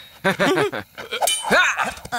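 Wordless gasps and grunts from a cartoon character, with a short metallic clink of swords about a second in.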